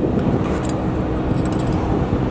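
A steady low rumble of a running engine, with a few faint light metallic clicks as a lift-gate cotter pin is handled.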